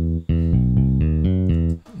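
Solo bass line from a sampled bass-guitar voice in a Roland XV-5080 software instrument, played from an ELF 707 karaoke accompaniment track. Held low notes give way to a quicker run of short notes, and the line cuts off shortly before the end.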